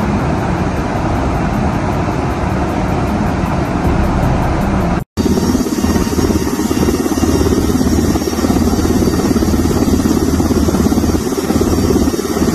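Steady rush of aircraft engine and wind noise in flight during aerial refuelling. It breaks off for an instant about five seconds in, then comes back louder and lower.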